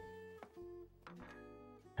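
Quiet plucked guitar music from an anime soundtrack, a few slow notes left ringing.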